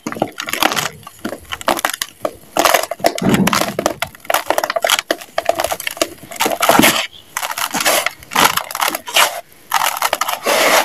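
A hand-moulded block of soft, crunchy compacted sand being crumbled between the hands, giving a dense run of irregular crunches and crackles as the grains break off and pour into a plastic tub.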